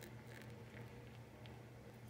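Faint pouring of milk from a saucepan into a small ceramic cup, barely above a steady low hum.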